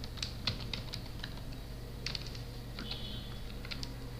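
Computer keyboard being typed on: about ten irregular key clicks over a steady low hum.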